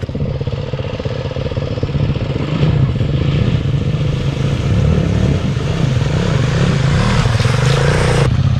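Dirt bike engine revving as the bike rides through a shallow water crossing, with the hiss of splashing water. The engine grows steadily louder as the bike approaches.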